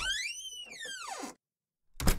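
A door creaking open, its hinge squeal rising and then falling in pitch for over a second, then the door shutting with a sharp knock near the end.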